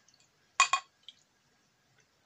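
Glass beer bottle clinking twice in quick succession against the rim of a drinking glass during a pour, with a fainter tick a moment later.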